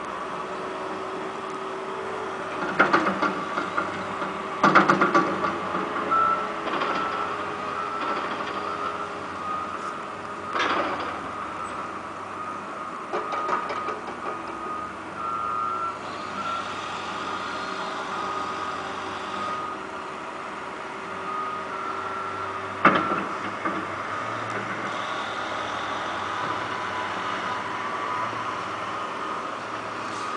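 Heavy construction machines, excavators among them, running on a demolition site, with a backup alarm beeping on and off. Several loud bangs cut through, the loudest about three and five seconds in and another near the end.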